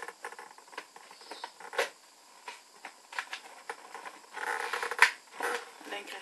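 Fingernails picking and scratching at a cardboard advent calendar door: scattered light clicks and scrapes, a short rustling scrape near the end and one sharp click about five seconds in.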